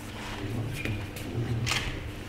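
Quiet room sound: faint murmured voices and small rustles, with a short hiss just before the end.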